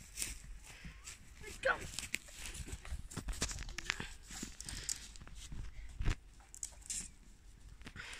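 Irregular footsteps and rustles on grass and dry twigs, with a low rumble underneath and a sharper knock about six seconds in.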